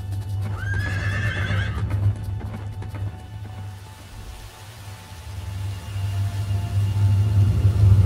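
A horse neighs once, about half a second in, a call of a second and a half. Underneath runs a low, steady drone of film score music that swells near the end.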